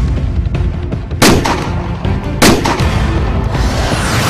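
Two loud gunshots about a second apart, each ringing out briefly, over background music.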